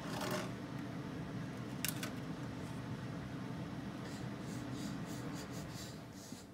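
Quiet room with a steady low hum, broken by a few light rustles and clicks of playing cards being picked up and handled, the sharpest near the start and about two seconds in, with fainter ticks later.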